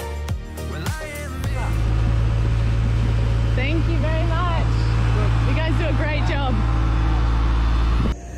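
Background music for the first second and a half, then a loud, steady low rumble with voices talking over it in the middle.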